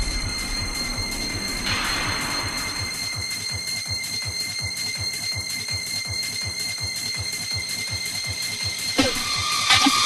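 A mechanical ratchet-like clicking effect in a donk dance mix: fast, even clicks under steady high tones, with a swell of noise a couple of seconds in. The full dance track comes back in near the end.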